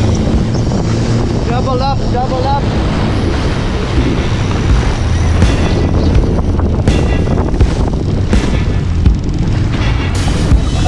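Engine of a small fishing craft running at speed over choppy sea, with heavy wind buffeting the microphone and rushing water, under background music. A short wavering voice-like sound comes about two seconds in, and several sharp knocks come in the second half.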